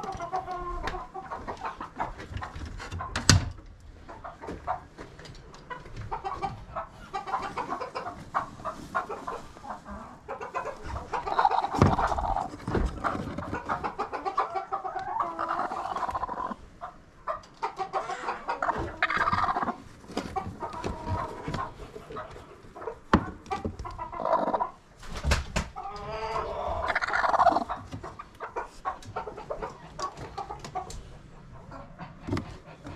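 Hens clucking and squawking in a coop, with the loudest runs of calls in the middle and near the end. Occasional sharp knocks come from handling in the nest boxes, the loudest about three seconds in.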